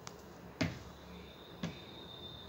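Two sharp knocks about a second apart, the first the louder, with a faint high steady whine starting between them.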